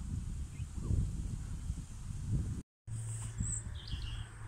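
Wind rumbling on an outdoor phone microphone, broken by a brief dropout about two-thirds of the way through. After the dropout a low steady hum sets in, and a short bird chirp comes near the end.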